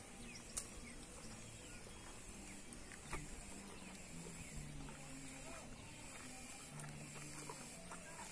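A young cow eating ripe plantain peels off the ground: faint chewing with an occasional crunch, and a faint low drone that comes and goes.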